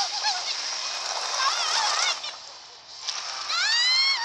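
Cartoon voices crying out in short shrieks and yelps over a rushing hiss. After a brief lull, one long rising scream comes near the end.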